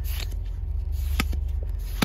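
Pokémon trading cards being flipped through by hand, sliding against each other with a few sharp clicks, over a steady low rumble in a car cabin.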